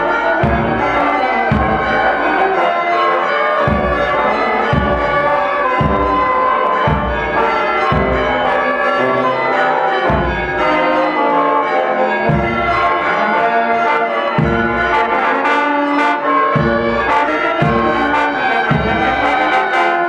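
Marching brass band playing a slow procession march, with a low drum beat about once a second under the brass.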